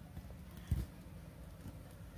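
A single dull thump less than a second in, over a steady low rumble.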